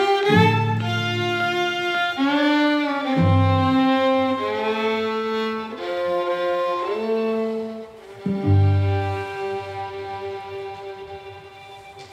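Two fiddles and two cellos playing slow, sustained bowed chords that change every second or two. In the closing bars a final chord is held from about two-thirds of the way in and fades away toward the end.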